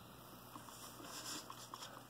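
Faint handling noise: a few light clicks and rubs of a plastic brick-built model tank being picked up off a foam board, against quiet room tone.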